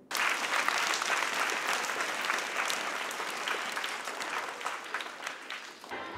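Crowd of schoolchildren applauding, a dense clatter of many hands clapping. It starts abruptly and thins out near the end.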